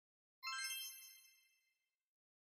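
A single bright chime struck about half a second in, ringing with several high tones and dying away over about a second.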